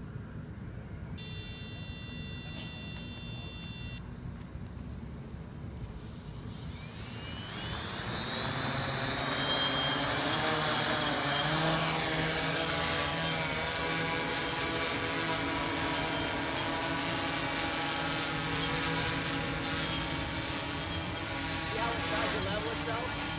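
Hexacopter's six electric motors and propellers spinning up suddenly about six seconds in, starting with a sharp high whine, then a steady loud buzzing hum that wavers in pitch as the craft lifts off and hovers. Before that, a steady electronic tone sounds for about three seconds.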